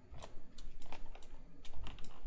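Irregular clicking of a computer keyboard, about a dozen light taps in quick, uneven succession.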